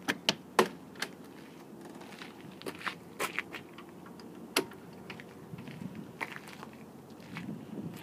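Keyless-entry keypad latch and metal entry door of a trailer's living quarters being unlatched and swung open: a quick run of sharp clicks in the first second, the loudest sounds, then scattered clicks and knocks as the door and its screen door are handled.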